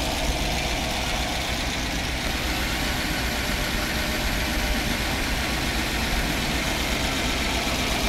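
Small-block Chevy V8 engine idling steadily.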